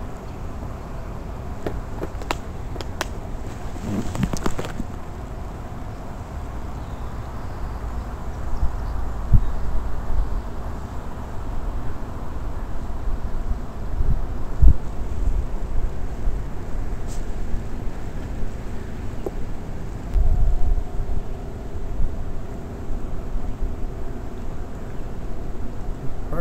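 Wind rumbling and buffeting on the microphone. A cluster of sharp clicks and rattles from a plastic tackle box being handled comes a couple of seconds in, and a few dull thumps follow later.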